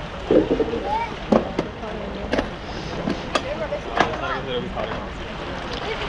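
Other people talking in the background, with wind on the microphone and a few sharp clicks.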